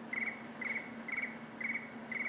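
Short, high chirps repeating evenly about twice a second, four in all, over a faint steady hum.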